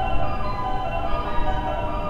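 Electronic station platform melody playing over the public-address speakers as a series of steady chime-like notes, with a low rumble underneath.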